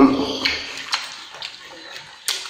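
Acoustic guitar playing breaks off and the last notes die away, followed by faint rustling with a couple of soft clicks, about half a second and a second in.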